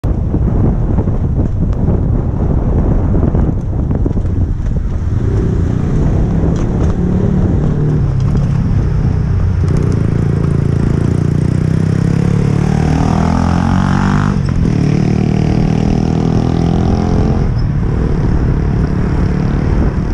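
Wind and road rumble on the microphone of a camera on a moving bicycle, with a motor vehicle's engine close by that rises in pitch as it accelerates about two-thirds of the way through, then runs on steadily before fading.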